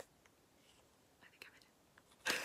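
Near silence: room tone, with a couple of faint whispered sounds.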